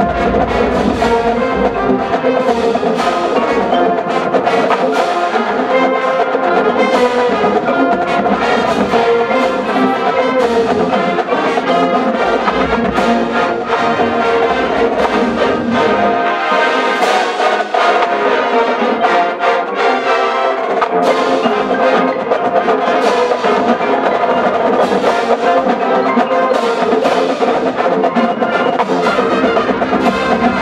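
College marching band playing at full volume: massed brass carrying the melody over a drumline and front-ensemble percussion keeping a steady beat. The low end drops away for a few seconds around the middle, then returns.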